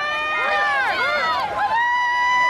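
Football crowd in the stands yelling as a play runs, several voices overlapping in drawn-out calls. One call rises and is held near the end.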